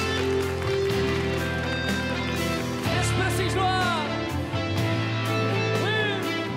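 Live pop-rock band playing the instrumental intro of a ballad: electric guitars, bass, keyboards and drums keeping a steady beat. Brief high vocal cries glide over the music a little past halfway and again near the end.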